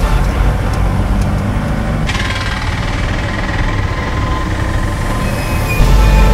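Steady road and engine rumble heard from inside a moving vehicle. About two seconds in, a brighter hiss joins it.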